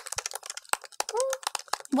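Typing on an Apple laptop keyboard: quick, irregular key clicks. A short voiced 'mm' sound a little after one second in.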